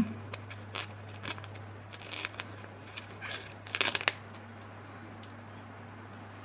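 Planner stickers and their paper sheet being handled: scattered soft clicks and crinkles, with a short crackling run of clicks about four seconds in, over a faint low hum.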